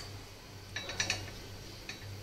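A few light clicks and taps from handling an oil bottle over an aluminium paniyaram pan, one at the very start and a small cluster about a second in, over a low steady hum.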